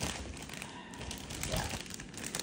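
A plastic bag crinkling as it is handled: a run of small, irregular crackles.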